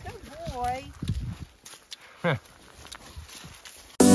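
Feet and dog paws shuffling through dry fallen leaves on a slope, with a brief voice early on and a short laugh a little over two seconds in.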